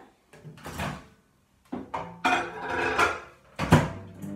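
Small countertop microwave being loaded: its door is opened and a ceramic plate is handled and set inside with a few clatters. Near the end the door shuts with one sharp, loud clunk, and a steady low hum begins as the oven starts.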